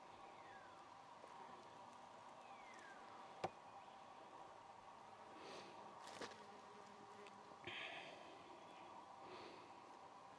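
Near silence outdoors with the faint drone of buzzing insects, which drops in pitch twice as one flies past, and a couple of faint clicks.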